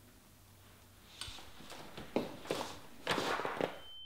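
A run of irregular soft scuffs and knocks starting about a second in, followed near the end by a steady high-pitched beep.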